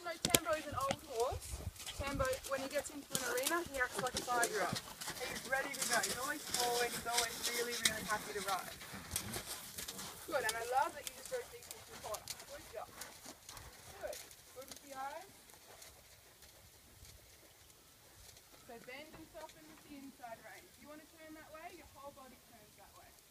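Hoofbeats of a ridden Friesian horse, under indistinct talking that thins out about halfway through.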